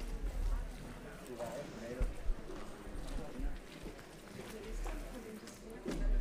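Faint murmur of people's voices in an auditorium, with a couple of light knocks about two seconds in.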